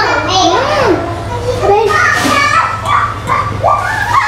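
Several girls' voices chattering and exclaiming over one another, with a steady low hum underneath.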